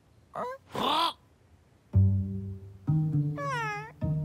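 Two short whimpering squeaks from a cartoon character, then low sustained cello or double-bass notes of the score from about two seconds in, with a falling whimper over them near the end.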